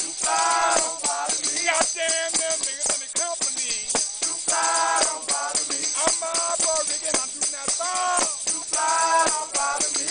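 Mardi Gras Indian chant: voices singing in short phrases over tambourines and hand frame drums beaten in a steady rhythm, with constant jingling from the tambourines.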